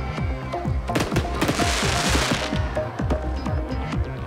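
Fireworks going off with many sharp bangs in quick succession and a stretch of crackling hiss around the middle, over background music.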